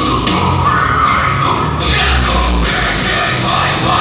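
Heavy metal band playing live: distorted electric guitars, bass and drums, with a vocalist shouting over them. The bass hits harder for a moment about halfway through.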